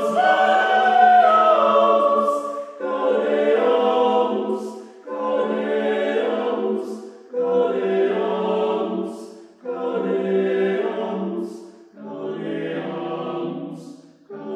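Men's a cappella choir singing in close harmony, in short phrases of about two and a half seconds. Each phrase ends with a hissed 's' and a brief break before the next.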